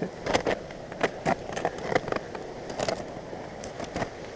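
Crampons on an ice climber's boots crunching and knocking into snow-covered waterfall ice, a dozen or so irregular sharp crunches and knocks.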